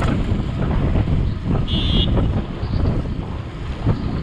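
Wind buffeting the microphone of a camera on a moving bicycle, a steady low rumble. A short high tone sounds just under two seconds in.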